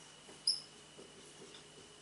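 Whiteboard marker writing: one short, high squeak about half a second in, with faint scratching of the pen strokes. A faint steady high tone runs underneath.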